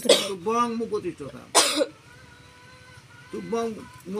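A man coughs once, sharply, about a second and a half in, between short stretches of a man's voice; a faint steady tone hangs in the pause before the voice returns near the end.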